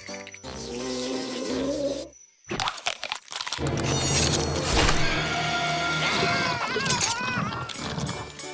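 Cartoon soundtrack of music and sound effects. It drops out briefly about two seconds in, then comes a run of sharp impact noises. Over the loud second half, cartoon cockroaches scream as they are swallowed by a giant carnivorous flower.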